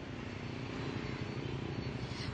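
A steady, low engine drone with a pitched hum, growing slightly louder.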